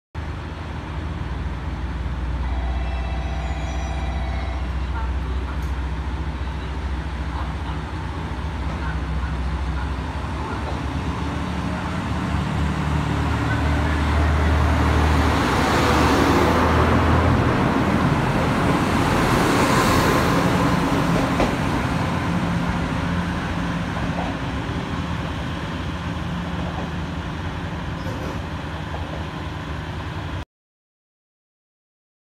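KiHa 66/67 diesel railcar idling at the platform with a steady low engine hum, then pulling away: the engines and wheel-on-rail noise grow loudest as the cars roll past about halfway through, then fade as the train leaves.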